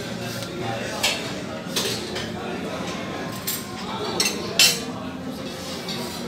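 Metal serving utensils and dishes clinking at a buffet counter: about five sharp clinks, the loudest a little past the middle, over low background chatter.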